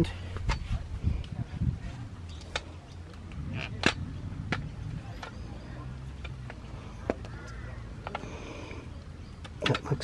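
Scattered light clicks and knocks of a black plastic end cap being handled and fitted onto the end of an aluminium awning pole, over a low steady hum.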